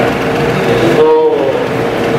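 A man's voice through a meeting-room microphone, one drawn-out word about a second in, over a steady high-pitched hum.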